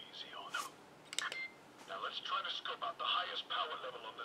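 A toy scouter worn over the eye playing its tinny electronic sound effects through a small speaker: a chirp near the start, a short steady beep about a second in, then a run of warbling electronic sounds.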